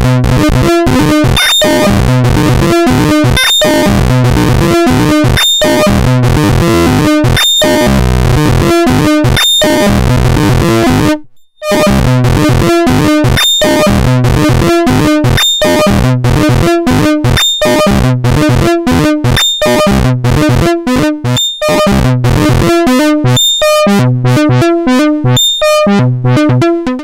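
A sequenced line of triangle-wave synth notes from a Eurorack modular, driven into clipping by the Plankton NuTone distortion module with its two channels cross-fed, giving a bright, distorted tone with added artifacts. The sequence cuts out briefly about eleven seconds in.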